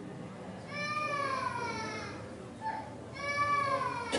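A high, drawn-out wailing cry heard twice, each about a second or more long and sliding down in pitch, over a low background murmur.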